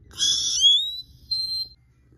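A high whistle that slides upward in pitch for most of a second, followed by a short, steady high note.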